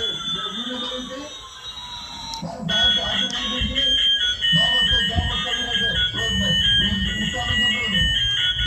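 Battery-operated toy A380 airliner playing its electronic sound effects: a gliding synthetic jet-engine whine for the first two or so seconds, then a tinny tune of stepped high beeps.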